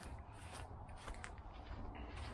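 Faint outdoor background: a low rumble with a few light clicks and rustles from a handheld camera being carried.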